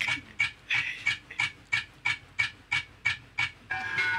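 Rapid, rhythmic breathy panting, about four short breaths a second, held very even. Music comes in just before the end.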